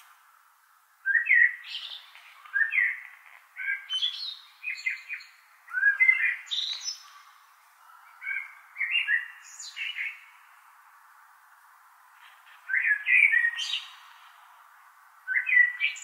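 Songbird singing: short phrases of quick, high chirps repeating every second or two, with a brief lull past the middle.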